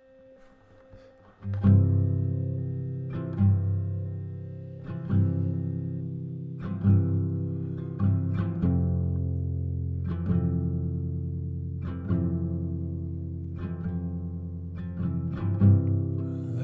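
Instrumental guitar intro to a slow folk song: after a near-silent first second and a half, chords are struck about every one and a half to two seconds and left to ring.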